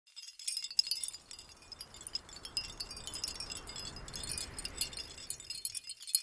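Logo-intro sound effect: a dense shimmer of tinkling, chime-like high notes, starting about half a second in, over a soft low swell that builds through the middle and thins toward the end.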